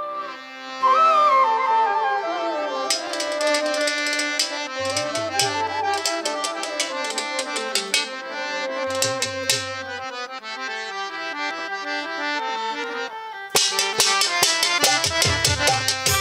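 Violin playing a folk melody with sliding notes, over an ensemble accompaniment with repeated sharp strikes and a few low drum strokes: the instrumental opening of a Bengali Bhandari folk song. Near the end the full band comes in louder.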